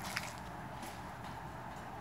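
Quiet, steady workshop room tone with a low background hum and one faint click shortly after the start; no tool is running.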